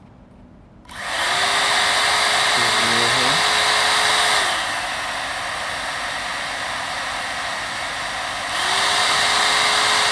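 One Step hot air brush switched on about a second in, its fan motor running with a steady whine and rush of air. About halfway it drops to a quieter, lower-pitched run on the medium setting, then rises again near the end on high. Medium running weaker than low is what the owner takes for a manufacturing fault.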